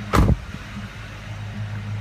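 A car door shutting once with a loud thud just after the start, over the steady low idle of a 2004 Ford Mustang Mach 1's 4.6-litre DOHC V8.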